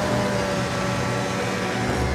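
Engine of a tracked snow vehicle running at a steady pitch, a continuous drone with a whine on top.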